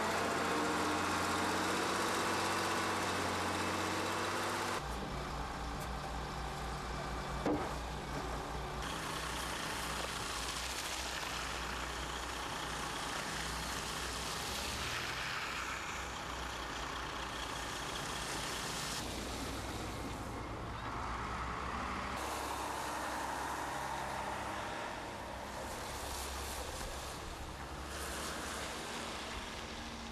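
Diesel engines of a front-end loader and dump trucks running and working as snow is pushed, scooped and loaded, the sound shifting abruptly several times as the shots cut. A short knock about seven and a half seconds in.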